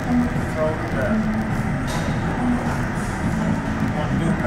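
Busy gym background: music and indistinct voices over a steady low rumble.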